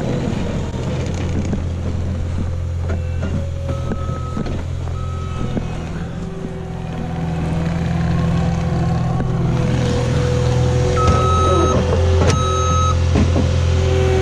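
Cat loader's diesel engine running steadily as it pushes snow, growing louder as the machine comes closer from about eight seconds in. Its reversing alarm beeps twice about four seconds in and twice more near the end.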